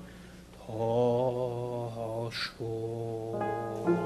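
A male cantor singing long, held notes of a cantorial piece, with a brief breathy sound about halfway through. Piano chords enter under the voice near the end.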